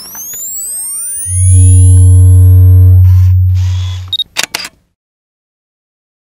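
Logo-animation sound effect: a cluster of rising sweeping whooshes, then a loud deep bass tone held for about three seconds under a few higher tones, fading out and ending in a few short sharp clicks.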